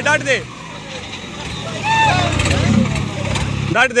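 Sonalika DI 750 III tractor's diesel engine running under heavy load as it strains against another tractor in a tug-of-war pull, with the rumble swelling about two seconds in. Men shout "de!" to urge it on at the start and again near the end.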